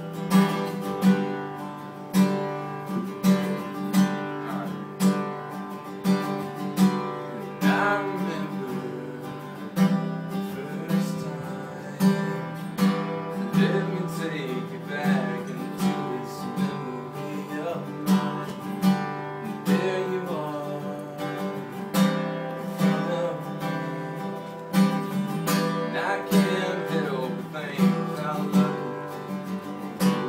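Steel-string acoustic guitar strummed in a steady rhythm, accompanying a man singing.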